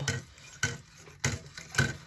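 A light bulb being screwed into a metal lamp socket inside a metal reflector: faint scraping of the base turning in the socket, with three sharp metallic clicks spaced a little over half a second apart.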